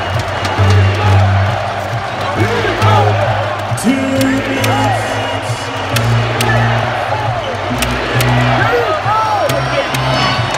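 Basketball arena din during live play: a crowd's steady noise over music with a deep bass line that steps from note to note, and short sneaker squeaks on the hardwood court scattered through it.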